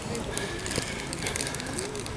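Faint distant voices over steady outdoor background noise.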